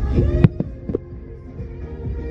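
Fireworks going off, about four sharp bangs in the first second, the second one the loudest, over the show's soundtrack music with held notes.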